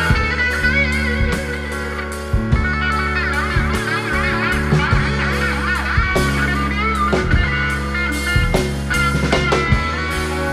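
A live rock band playing: a Stratocaster-style electric guitar takes the lead with bent, wavering notes over a steady bass line and drum kit hits.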